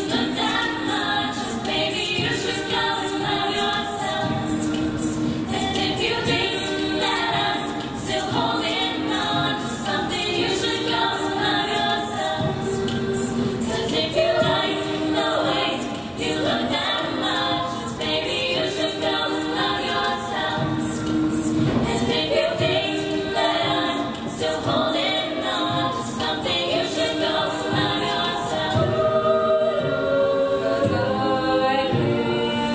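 A girls' a cappella choir singing a pop song in harmony, with a soloist's voice over the group. A steady crisp high beat runs under the voices and drops out near the end.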